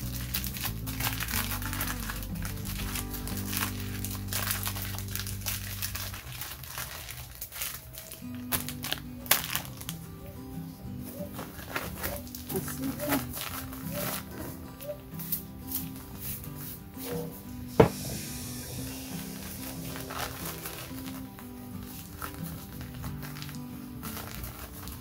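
Plastic sack and packet wrappers crinkling and rustling as items are handled and pulled out of a woven food-aid bag, over background music with steady held chords. One sharp click stands out about three-quarters of the way through.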